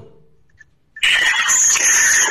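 Near silence for about a second, then a harsh, high squealing noise cuts in abruptly and runs on steadily: line noise from a remote caller's audio feed as it opens.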